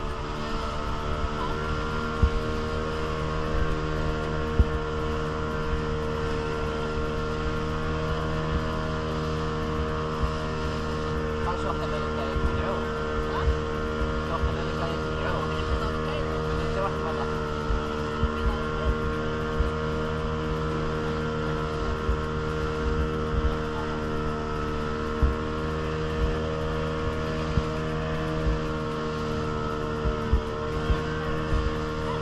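Motorboat engine running steadily at cruising speed, with water rushing along the hull and scattered brief knocks.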